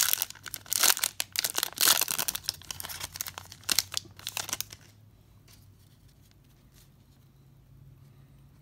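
Foil wrapper of a Topps baseball card pack being torn open and crinkled in the hands, an uneven crackling that stops about halfway through, followed by a few faint clicks as the cards are handled.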